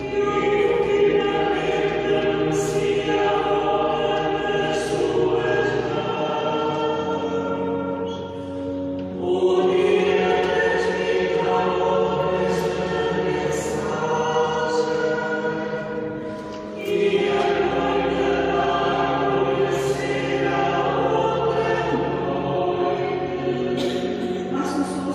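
A choir singing a slow sacred chant in long held phrases, breaking briefly about eight and sixteen seconds in.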